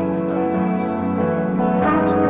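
Background music: sustained instrumental chords that change about once a second.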